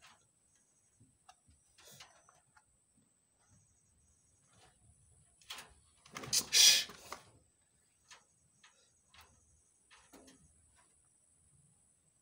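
Rabbits moving about on loose bedding: scattered light clicks and scuffles, with one louder rustling scuffle about six and a half seconds in.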